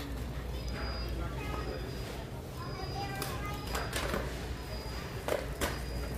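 Background of a large store: a steady low hum with faint distant voices, and a few soft knocks about halfway through and near the end.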